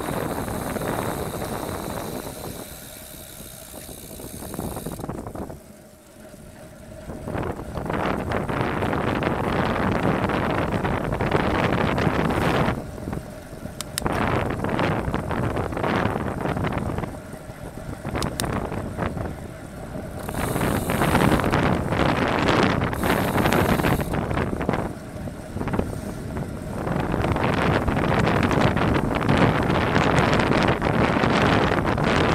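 Wind noise on a bicycle-mounted camera's microphone at race speed, rising and falling in gusts and loudest near the end.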